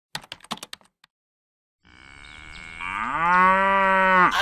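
A quick run of keyboard typing clicks in the first second, then after a short pause a cow's single long moo that rises in pitch and then holds steady.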